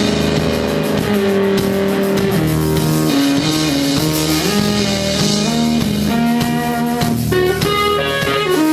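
Electric guitar, a Flying V, playing a slow lead melody of long held notes that step up and down in pitch every half second or so, with a drum kit behind it.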